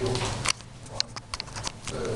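A handful of light, sharp clicks and knocks over quiet room noise as a man handles things at a wooden podium. There is a faint murmur at the very start.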